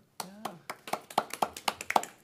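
A few people clapping, a short round of applause at about four claps a second, starting just under a second in.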